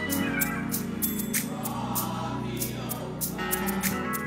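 Live gospel band playing: a drum kit with cymbal strokes about three a second over sustained keyboard chords and bass guitar.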